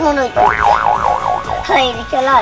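A cartoon comedy sound effect, a tone that wobbles rapidly up and down in pitch for about a second, over light background music. A short vocal sound follows near the end.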